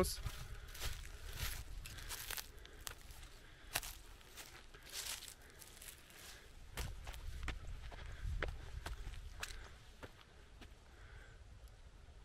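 Footsteps on dry earth and twig litter, irregular crunching steps about one or two a second, over a low rumble on the microphone; the steps thin out near the end.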